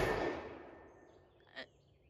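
Echo of a blank-fired can launcher's shot rolling away and fading out over about a second. A short faint sound follows about halfway through.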